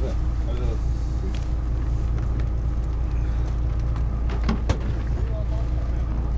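Moored fishing boat's engine idling with a steady low rumble, with a single sharp knock about four and a half seconds in.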